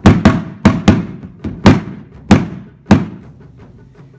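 Wooden bachi striking a practice tire taiko, a car tire with a head of three layers of Scotch packing tape, laid flat for beta-style playing. There are about seven sharp hits in an uneven rhythm over the first three seconds.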